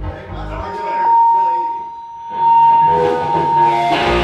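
Electric guitar through an amplifier: a single high tone rings steadily for about three seconds, not dying away, as other guitar notes come back in under it about halfway through.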